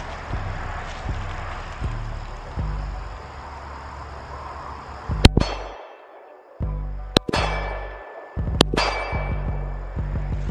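Background music with a heavy bass beat, over which a pistol is fired four times: two quick shots about halfway through, then single shots about two seconds apart. Each shot is a sharp crack with a short ringing tail.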